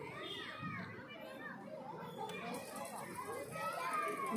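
Several children talking and calling out over one another as they play, a steady jumble of overlapping young voices.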